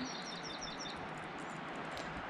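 A small bird chirping a quick run of about six short high notes in the first second, over steady background hiss.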